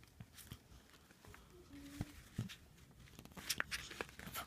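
Faint rustling and soft taps of a child's hand handling a picture book's paper page, with sharper paper swishes near the end as the page starts to turn.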